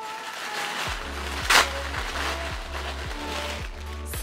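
Tissue paper rustling and crinkling as it is unfolded and lifted, with one sharp, loud crinkle about a second and a half in. Background music with a steady bass beat plays underneath.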